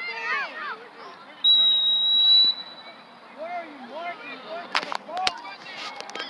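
A referee's whistle blown once: one shrill, steady high tone about a second long, rising slightly in pitch, which stops play. Scattered spectator voices can be heard around it, and there are two sharp clicks near the end.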